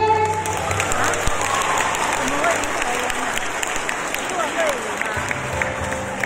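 Audience applauding at the end of a song, with a few voices calling out in the crowd. About five seconds in, a low bass note from the band comes back in under the clapping.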